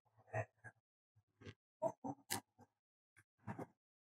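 Faint, short scrapes and rustles of gloved hands and a hand trowel digging in loose garden soil to lift gladiolus corms, about nine separate small sounds.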